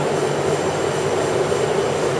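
Steady machinery hum: a constant drone with a hiss over it, even and unbroken throughout.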